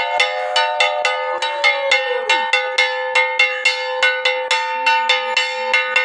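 A ritual metal bell struck rapidly and steadily, about three to four strikes a second, each strike ringing on so the tone hangs between them.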